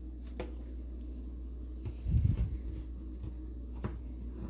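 Hands handling a small plastic action figure and its cloth trench coat: light rustling and small clicks, with a low bump just past halfway and a sharp click near the end, over a steady low hum.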